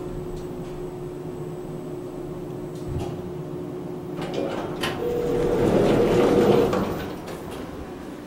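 Elevator cabin hum while the car travels, then, about five seconds in, a louder stretch with a short held tone as the car arrives and its doors slide open.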